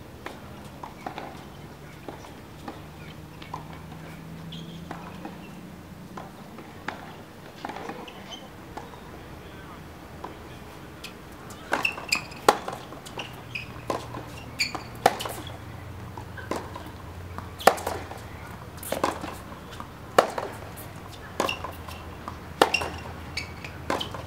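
Tennis rally on a hard court: sharp racket strikes and ball bounces, roughly one a second, starting about halfway through, over a low steady hum.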